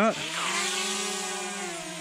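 DJI Mavic Mini drone's four motors and propellers spinning up for take-off, a steady high buzzing whine.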